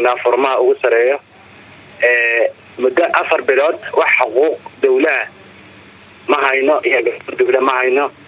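Speech: a voice talking in short phrases with brief pauses between them.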